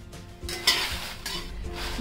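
Dried red chillies being stirred with a steel ladle in a kadhai as they roast in a little oil: dry rustling and scraping with a light sizzle. There is a louder burst of rustling about two-thirds of a second in.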